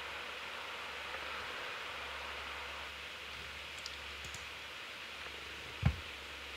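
Steady low hiss and hum of room tone, with a few faint clicks about four seconds in and one brief low thump just before the end.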